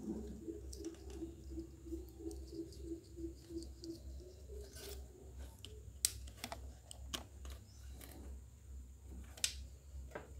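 Light handling clicks and taps as a metal drinks can and cord are worked by hand, with sharp clicks about six and nine and a half seconds in, over a steady low hum. A faint chirping, pulsed about three times a second, runs through the first four seconds.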